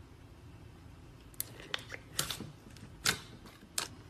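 Clear slime with confetti sprinkles being stretched and folded by hand, giving a run of sharp clicks and pops in the second half, the loudest about three seconds in.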